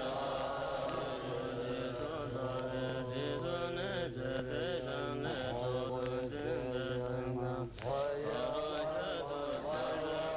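Tibetan Buddhist monks chanting a mantra in low voices, with a held deep note under the chant and a short break for breath a little before 8 s.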